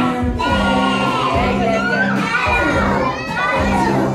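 Young children singing and calling out together over the backing music of a children's song.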